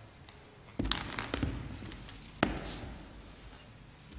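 Knocks and thumps of a guitarist handling his guitar and stage gear as he settles in to play: a cluster of clicks and dull thuds about a second in, then one louder knock about two and a half seconds in.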